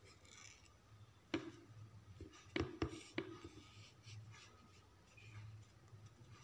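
Fingers pressing small glass stones onto a glued board, with light rubbing and a few sharp clicks: one about a second and a half in, then three close together around the middle.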